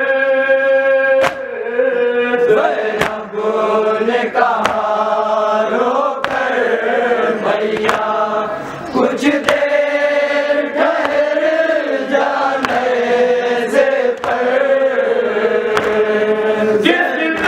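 Men chanting a Shia nauha (lament) in long, held melodic lines, a lead voice with the group. Sharp chest-beating (matam) strikes keep a steady beat about every one and a half seconds.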